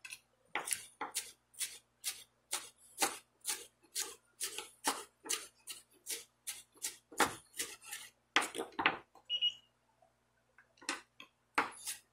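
Chef's knife chopping green bell pepper on a wooden cutting board: a steady run of knocks, about three a second, that pauses briefly near the end before a few more chops.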